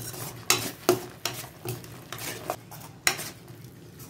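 A spoon stirring thick masala paste frying in oil in a stainless steel kadai, clinking and scraping against the pan about five times at uneven intervals over a faint sizzle. The paste is being stirred until the oil separates from it.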